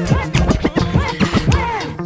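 Turntable scratching over a hip-hop beat: a string of short scratches swooping up and down in pitch, with no vocals.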